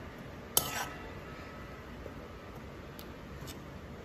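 Steel spoon stirring thick curry paste in an aluminium pan, with one sharp metallic clink about half a second in and a couple of fainter taps later, over a faint steady hiss.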